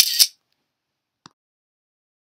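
A short, sharp camera-shutter click at the start, then silence broken by one faint tick about a second later.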